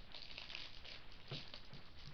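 Faint crinkling of a clear plastic bag as a small camera swivel mount inside it is handled, with one light knock a little past halfway.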